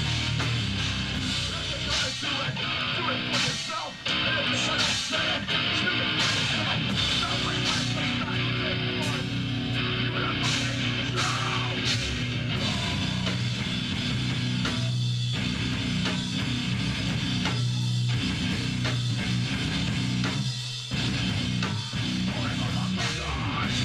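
Hardcore band playing live: distorted electric guitars and a drum kit, loud and continuous, with brief drops about four seconds in and near the end.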